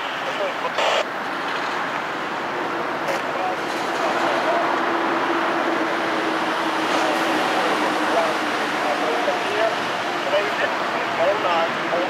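Diesel locomotives of an approaching freight train, led by a BC Rail GE C40-8M, running under power. The steady engine noise grows a little louder about four seconds in, with a steady hum note under it from a couple of seconds in.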